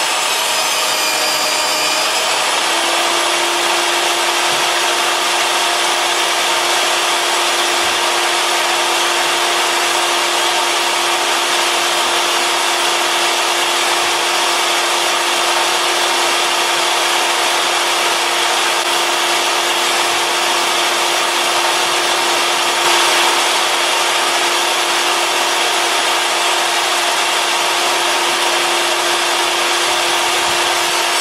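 Portable bench table saw running steadily, a continuous motor-and-blade whine. Its pitch dips slightly about a second in, then recovers and holds.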